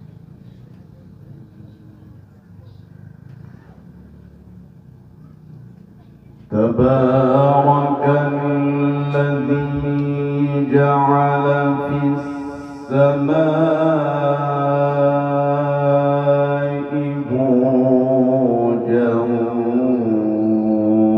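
Solo male Quran recitation (mujawwad-style tilawah) through a microphone. About six seconds in, the qari starts singing long, steady melodic notes with ornamented turns. He breaks briefly for breath about halfway through, then carries on. Before he starts there is only low background noise.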